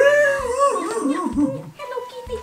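A woman's high-pitched, drawn-out laugh that starts suddenly and loudly, holds briefly, then wavers downward.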